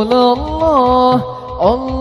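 A male voice singing a sholawat melody into a microphone, holding long notes and sliding between them, over hand-struck frame drums (rebana) keeping a steady beat.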